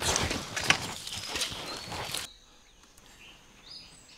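Feet scuffing and scrambling over rocks and loose stones for about two seconds, with a sharp knock about a second in. After that it goes quieter, with a few faint bird chirps.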